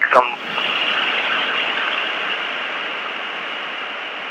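Steady hiss on a telephone line during a pause in speech, fading slightly over a few seconds.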